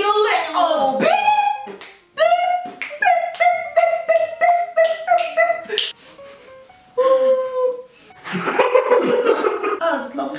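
Women singing loudly in short, held notes, with a quieter gap about two-thirds through and a brief noisy burst near the end.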